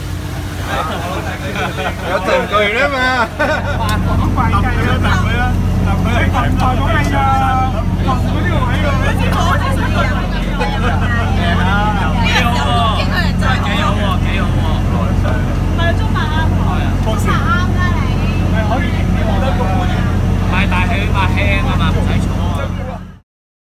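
A passenger ferry's engine running with a steady low hum, which grows louder about three and a half seconds in and then holds. Passengers chatter over it in the cabin.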